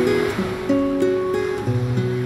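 Live band music in an instrumental stretch without singing: sustained chords shift every fraction of a second over a low bass line that drops out about half a second in and comes back near the end.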